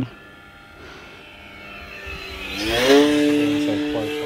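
Electric motor and propeller of an E-flite Commander RC plane in flight. Faint at first, then about two and a half seconds in it rises in pitch and grows loud, with a brief rush of air at its loudest, and settles into a steady whine.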